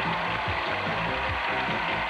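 Game show theme music with a steady beat under a studio audience applauding.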